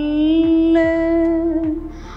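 A woman singing, holding one long note that rises slightly and fades out near the end, over a low, repeating thud of a beat.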